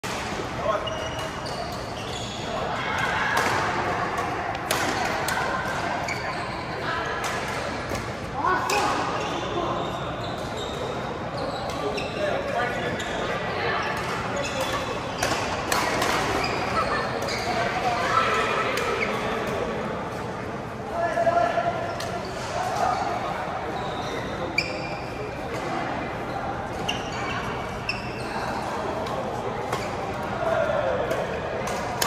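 Badminton rackets striking a shuttlecock in a doubles rally: a string of sharp clicks at irregular intervals, among players' voices and calls, echoing in a large sports hall.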